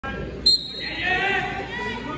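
Voices talking and calling in a large echoing gym, with a brief sharp sound about half a second in, the loudest moment.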